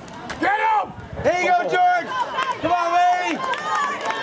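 Spectators yelling encouragement at a youth football run play: three long, drawn-out, high-pitched shouts, one after another, over outdoor crowd noise.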